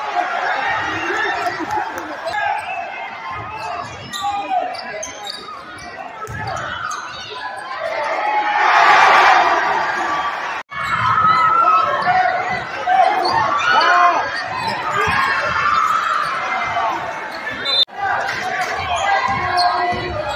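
A basketball dribbling on a hardwood gym floor amid steady crowd chatter, echoing in a large gym. Near the middle the crowd noise swells loudly for about two seconds. The sound drops out for an instant twice, at edits.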